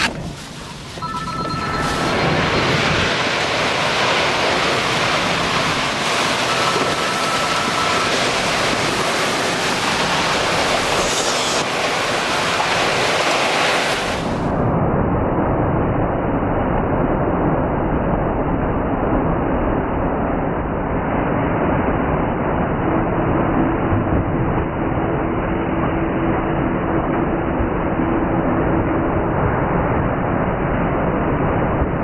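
Tornado winds blowing hard across the microphone, a steady loud rushing roar. About halfway through the sound turns duller and muffled.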